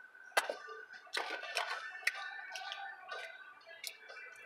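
Close-up eating sounds: wet lip smacks and sharp mouth clicks as fingers are licked, then a bite into a breaded fried chicken finger, with clicks and smacks spread through.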